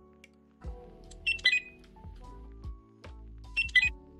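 Handheld OBZ barcode scanner beeping twice, a short high multi-tone chirp each time, the confirmation of a successful read as it scans the barcode tags on jewellery pieces.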